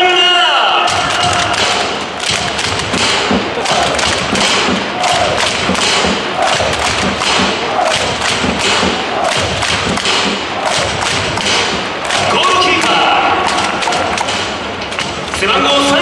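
Stadium crowd beating drums and clapping in a steady rhythm. An announcer's voice over the public-address system comes in about twelve seconds in.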